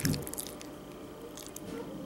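Spoon stirring sticky ube rice porridge with half-and-half in a ceramic bowl: a clink of the spoon right at the start, then soft, wet squishing of the rice that dies down.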